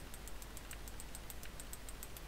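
Computer keyboard keys being pressed in quick, even succession, about six light clicks a second, as when stepping through a list with repeated key presses.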